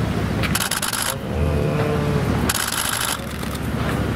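Two short bursts of rapid clicking from press photographers' camera shutters firing in continuous-shooting mode, about two seconds apart, over a steady rumble of street traffic.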